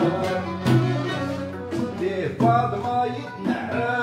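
Moroccan malhoun ensemble playing: violins bowed upright on the knee, with oud and a small plucked lute, over the regular strokes of a frame drum.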